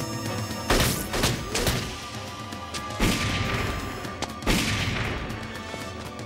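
Gunshots over background music: a quick burst of about four shots around a second in, then two more single shots about three and four and a half seconds in, each echoing away.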